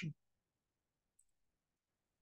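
Near silence: room tone, with one faint, brief, high-pitched click about a second in.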